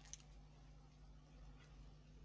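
Near silence: room tone with a faint steady low hum and a couple of faint clicks.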